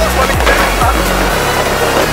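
Electronic dance music with a steady bass line and a deep kick drum about twice a second; the kick drops out about a second and a half in, leaving the bass.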